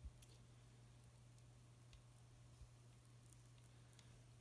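Near silence: a faint steady low hum, with a few faint ticks scattered through it.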